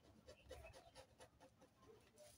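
Faint scratching of a ballpoint pen drawing on brown pattern paper, in short strokes a few times a second.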